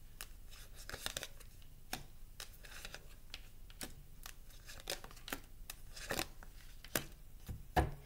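Tarot cards being drawn from a deck and laid down on a wooden table: a scattered series of short snaps, slaps and rustles of card stock, about a dozen in all.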